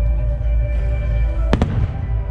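A firework shell bursting with a single sharp bang about one and a half seconds in, over music with sustained notes and a steady low rumble.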